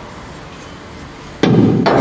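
A bent length of exhaust tube from a roll-cage test kit knocking against the car's roof pillar as it is offered up into place. It lands with a sudden clunk about one and a half seconds in, with a second knock just after, following a quiet moment of room tone.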